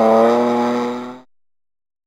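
Rally car's engine heard as the car drives away, a steady note that slowly fades, then the sound cuts off abruptly about a second and a quarter in.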